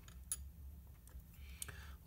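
A few faint, light ticks as a glass dip pen is lifted off the desk, its glass touching the other glass pen, over a low steady hum.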